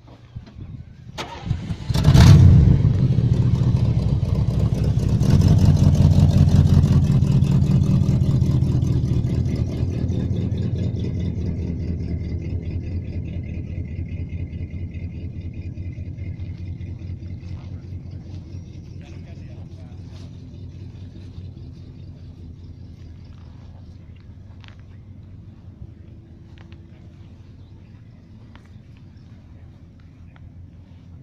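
Cadillac convertible's V8 being started: a brief crank about a second in, then the engine catches loudly and picks up again a few seconds later. It then settles into a steady idle that gradually quietens.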